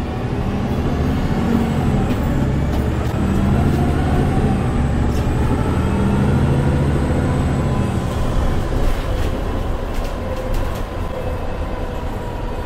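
MAN A22 Euro 6 city bus heard from inside the passenger cabin while under way: the diesel engine pulls through its Voith automatic gearbox with a low rumble and a whine that climbs in pitch over the first few seconds, then holds steady. A few short rattles come from the cabin later on.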